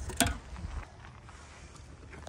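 A single sharp clink as a brass freeze-branding iron is drawn out of a liquid nitrogen dewar, followed by faint low background noise.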